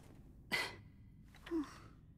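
A man's short breathy exhale through a smile, like a soft sigh or chuckle, about half a second in, followed a second later by a brief low hum.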